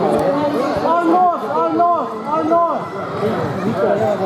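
Several voices shouting and chattering at once at a youth grappling match: coaches and spectators calling out, with three loud drawn-out shouts between about one and three seconds in.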